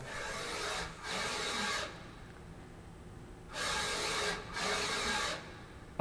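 ClearPath integrated servo motor spinning a ball screw at up to about 3,500 RPM, driving a linear-stage carriage in rapid traverses. Four whirring, rasping runs of under a second each: two back to back, a pause of about a second and a half, then two more.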